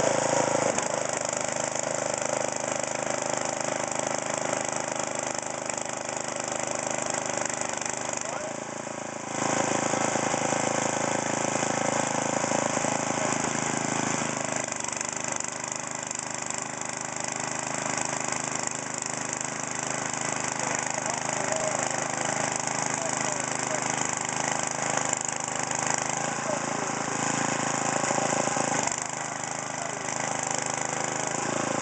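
Husqvarna DRT900E rear-tine tiller running under load as its tines dig through sod and soil. The engine runs steadily, with its level rising sharply about nine seconds in and dropping near the end.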